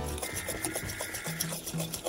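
A spoon scraping and stirring dry pudding-style lemon pie filling mix and sugar around a stainless steel saucepan, a gritty rubbing sound, over background music.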